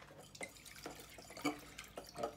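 Limoncello mix of grain alcohol and simple syrup being stirred with a utensil in a plastic tub: irregular small splashes and clicks, the loudest about one and a half seconds in.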